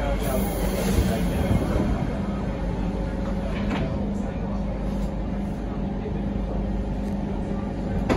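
Interior running noise of a Siemens C651 metro train car: a steady rumble of wheels on rails with a constant low hum.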